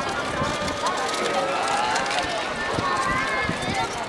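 Several people talking at once in a busy open square, with footsteps on cobblestones.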